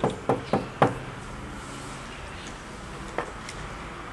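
A fist knocking on an old wooden door: four quick knocks about a quarter second apart in the first second, followed by a fainter single click about three seconds in.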